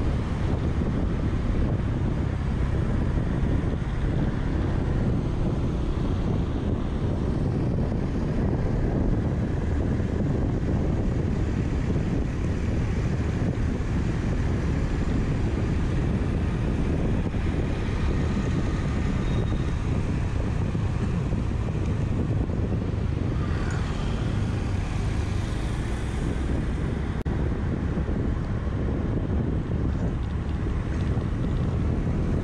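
Steady wind rumble on the microphone and road noise from a Honda scooter being ridden at a steady speed, its small engine running underneath.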